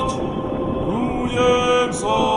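Background music: a chanting voice holding long, steady notes.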